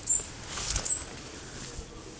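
Two short, high chirps from a small bird, about a second apart, with a soft rustle between them.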